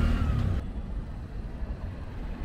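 Traffic on a busy road: a steady noisy rumble of passing vehicles, which drops a little in level about half a second in.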